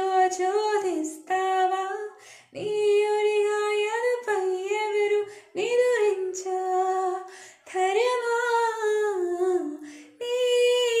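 A woman singing a Telugu song unaccompanied, in four long held phrases with short breaths between them.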